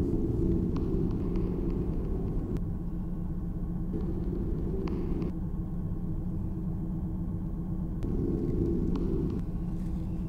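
Steady low rumble of a car in motion, heard from inside the vehicle. A slightly higher hum swells and fades a few times, and there are a few faint clicks and rattles.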